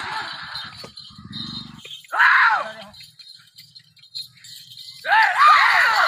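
Men shouting and whooping to urge on a yoked pair of Ongole bulls pulling a stone block: one loud shout about two seconds in, then a run of repeated shouts from about five seconds on.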